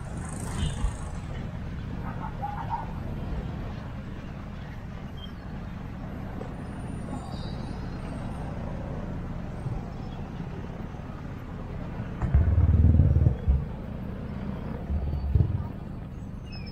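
Outdoor street ambience on a riverside walkway: a steady low rumble of traffic and wind, with faint distant voices. A louder low rumble lasts about a second starting about twelve seconds in, and a shorter one comes near the end.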